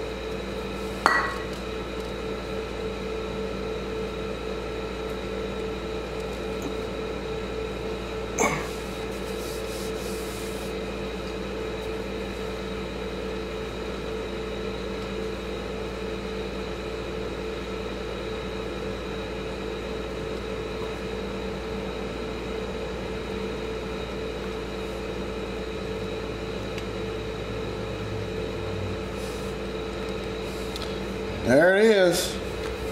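Two brief metallic clinks of hand tools against the ATV engine's starter chain and sprocket, one about a second in and one about eight seconds in. Under them a steady hum with several fixed tones runs throughout.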